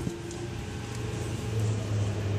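A steady low hum with a single click right at the start.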